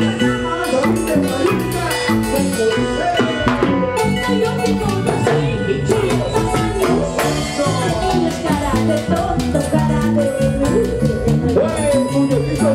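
Live Andean folk band playing an instrumental dance passage: a harp and an electric bass over drums keeping a steady, even beat.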